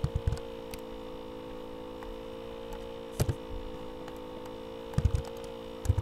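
Clicks of a computer mouse and keyboard in small clusters, just after the start, once about three seconds in, and several near the end, over a steady electrical hum.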